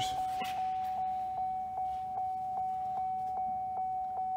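GMC Sierra's dashboard warning chime ringing with the driver's door standing open: a single steady tone repeating evenly, about two and a half chimes a second. A couple of light knocks come in the first half second.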